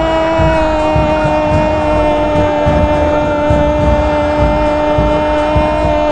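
A radio football commentator's long, held goal cry for a converted penalty, sustained on one steady note and sinking slightly in pitch.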